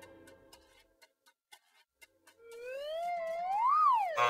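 Comedy sound effect for a gauge needle swinging: a few faint ticks, then a whistle-like tone that slides up with a wobble from about halfway through, peaks and drops away near the end.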